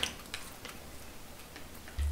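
Faint chewing: a few soft, irregular mouth clicks as food is eaten.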